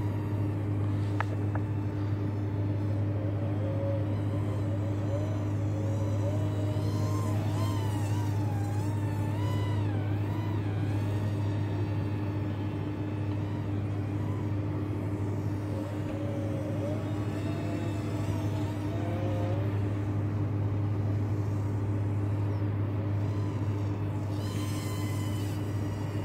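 Hubsan X4 H107D+ micro quadcopter's motors whining in flight, the pitch wavering up and down as the throttle changes, over a steady low hum.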